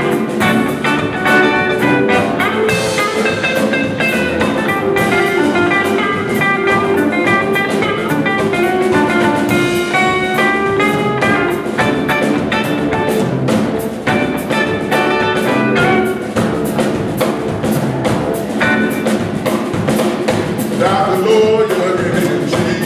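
Live blues band, with electric guitars and a drum kit, playing a shuffle-style instrumental passage. A lead guitar plays quick runs of short notes over the steady drums.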